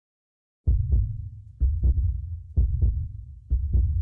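Low double thumps like a heartbeat, in four pairs about a second apart, starting just under a second in.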